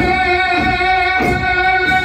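Rajasthani folk music for the Ghindar dance: singing over a steady held note, with regular beats about every 0.6 s.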